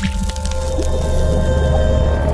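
Logo-animation sting: music with a heavy, sustained bass swell and steady tones, with a wet squishy splash effect for a falling ink drop.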